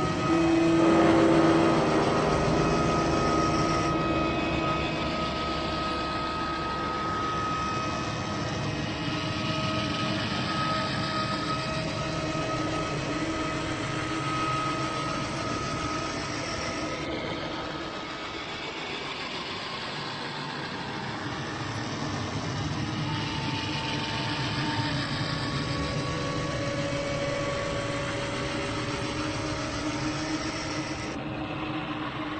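Ambient drone soundscape: a steady rumbling, rushing noise bed under long-held tones that shift in pitch every few seconds, swelling in loudness about a second in.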